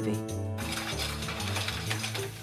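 A frying pan flaring up over a gas burner, with a steady crackle and rush of flame and sizzling. A short held tone sounds at the very start.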